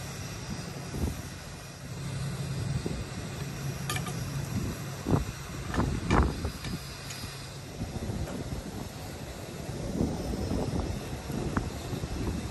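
A heavy log being moved onto a portable band sawmill's steel bed: a few dull thuds and sharp knocks, loudest around halfway through, over a low rumble and wind on the microphone.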